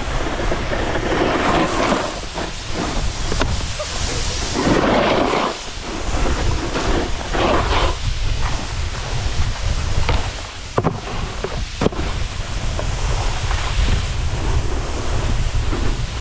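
Wind buffeting a helmet camera's microphone while riding a snowboard downhill, with the board scraping and hissing over the snow in surges. Two sharp clicks come about two thirds of the way through.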